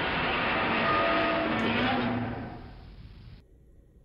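A Godzilla film sound effect laid over the video: a loud, muffled rushing noise with no high end, holding for about two seconds and then fading out by about three seconds in.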